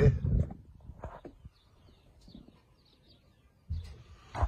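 The end of a man's word, then faint bird chirps in a quiet outdoor background, with a brief low sound near the end.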